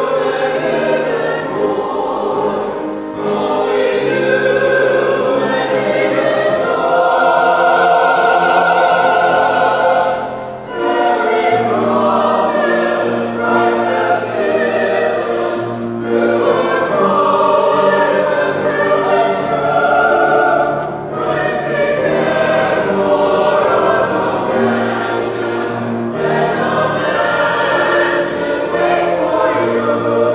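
A choir singing a slow piece in long, sustained phrases, with short breaks between phrases about 3, 10 and 21 seconds in.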